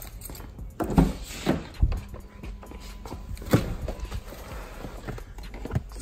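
Getting into a BMW E90 3 Series: the driver's door is handled and opened and a person climbs in, making a few knocks and thumps, the loudest about a second in and again about three and a half seconds in.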